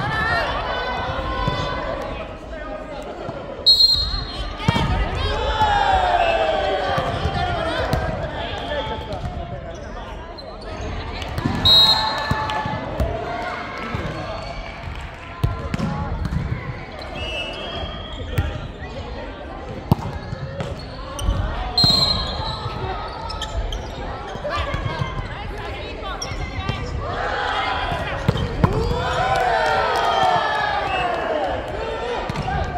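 Indoor volleyball play in a large hall: players' voices calling out and chatting, with the ball being struck and bouncing on the hardwood floor. A few short, loud, high sounds stand out about four, twelve and twenty-two seconds in.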